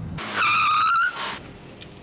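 Car tyres squealing under sudden hard braking: one high screech, about a second long, that rises slightly in pitch. It is the sign of an emergency stop in a near miss.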